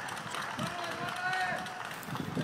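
People's voices shouting and calling out across an open ballpark, one drawn-out call held for about a second in the middle.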